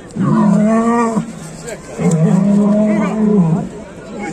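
Fighting bull bellowing twice: two long, low, steady calls, the second longer than the first. It is the threat call of a bull squaring up to a rival before a fight.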